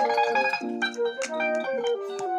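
Electric guitar playing neo-soul chords and short melodic phrases, the notes plucked and left ringing, changing several times a second.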